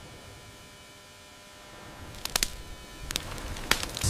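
Sound-designed rushing floodwater: a steady low wash of noise with a faint hum under it that swells about halfway through, with a few sharp cracks in the second half.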